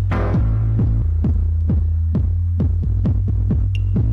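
Electronic dance music from a DJ mix: a heavy kick drum that drops in pitch, a little over twice a second, over a droning bass line. A crash sounds at the start.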